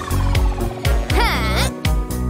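Cartoon soundtrack: background music with low held bass notes, and a warbling sound effect about a second in that wavers up and down in pitch.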